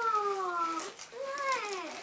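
A person humming "mmm" with closed lips while tasting a snack: two drawn-out hums, the first sliding down in pitch, the second rising and then falling.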